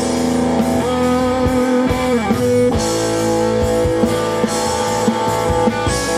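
Live rock band playing an instrumental passage: electric guitar holding long ringing notes over bass guitar and drums, with one note sliding down about two seconds in.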